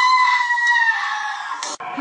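One long, high-pitched animal scream that drifts slightly lower in pitch and cuts off suddenly near the end.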